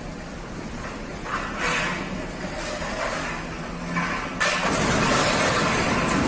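Heavy truck engine running under load while a cable hauls an overturned box truck upright, with a few short surges in the first four seconds. About four and a half seconds in comes a sudden, loud, sustained rush of noise as the truck drops back onto its wheels.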